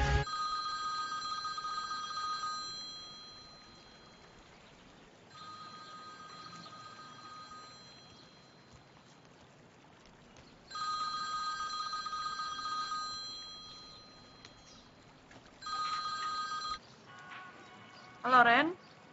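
iPhone ringing with an incoming call: a steady electronic ringtone in four bursts of a couple of seconds each, separated by pauses. The last burst is cut short near the end as the phone is picked up.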